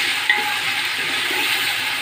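Chopped tomatoes and onions sizzling in hot oil in a pot, stirred with a spatula, a steady frying hiss.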